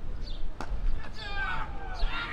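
A single sharp knock of a cricket bat striking the ball, about half a second in. Faint high-pitched shouts from the field follow, over a low rumble.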